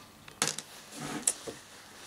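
A few light clicks and knocks of handling: the plastic cap pressed back onto a bottle of steel BBs and the BB pistol and its magazine moved about on a table, with a click about half a second in and two more after a second.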